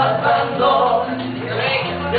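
Men singing a Latin song into microphones over amplified backing music.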